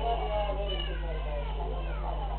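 Several people talking at once in a room, with a steady low electrical hum underneath.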